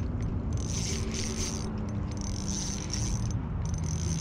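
Spinning reel being cranked to reel in a hooked fish: a steady mechanical whirr of the reel's gears, with a faint hum and a scraping sound that keeps breaking off.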